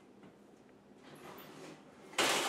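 Near silence: room tone with a faint, soft handling noise from about a second in.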